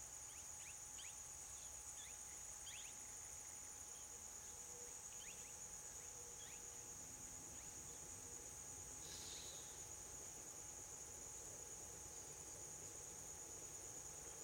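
Faint, steady, high-pitched drone of insects, with a few short faint chirps in the first few seconds.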